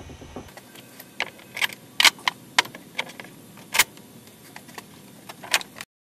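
Metal bar clamps being set and tightened on a glued-up stack of wood boards: a series of sharp metallic clicks and knocks, about seven of them at irregular spacing, cutting off abruptly just before the end.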